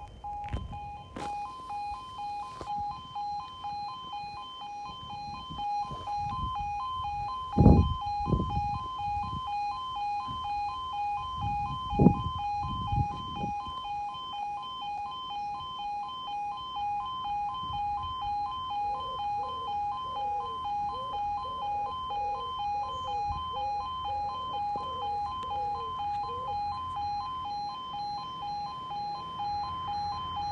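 Railway level crossing audible warning alarm sounding a steady, pulsing two-tone electronic tone while the barriers are down. The 'another train coming' sign is lit: a second train is due and the crossing stays closed.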